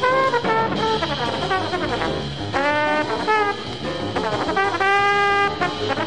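1950s small-group jazz: a brass horn plays a quick, bending melodic line over walking bass and drums.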